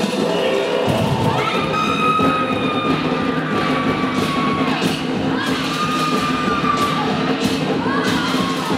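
Festival performance music with drums, over which come long held shouts that slowly glide down in pitch, along with crowd cheering.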